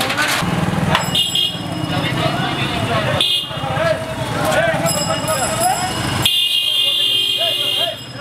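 Busy street noise: a motor engine hums and people talk, with repeated bursts of a high-pitched tone. The sound changes abruptly twice, about three and six seconds in.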